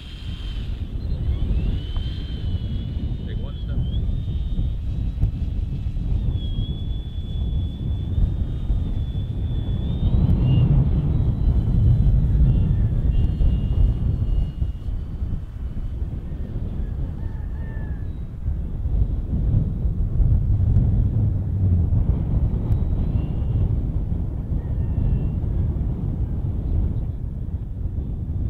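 Strong wind buffeting the microphone in a heavy, gusting rumble. Above it, a thin, wavering high whine from the electric motor and propeller of a radio-controlled E-flite DHC-2 Beaver, clearest in the first ten seconds and fainter after.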